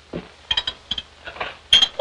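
A few light clinks and taps of glass as a bottle is handled. The brief ringing strokes come in a scatter, and the loudest pair falls near the end.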